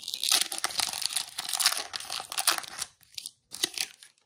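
The foil wrapper of a 2021 Panini Absolute Football card pack being torn open and crinkled in the hands for about three seconds, then a few short crinkles near the end as the cards come out.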